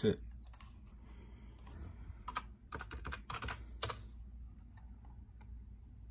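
Typing on a computer keyboard: a short run of key clicks about two to four seconds in.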